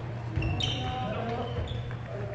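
Badminton being played on a wooden hall floor: a sharp hit about half a second in, then short high squeaks from court shoes, over a steady low hum and voices echoing in the hall.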